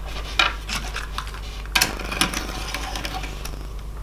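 Small plastic clicks and scraping as an N-gauge model railcar is handled and set onto the track with a plastic rerailer, with a sharper click about two seconds in followed by about a second of scraping. A steady low hum runs underneath.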